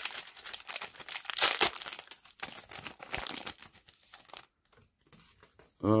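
A trading card pack's plastic wrapper being torn open and crinkled by hand, a dense crackling that fades out a little over four seconds in.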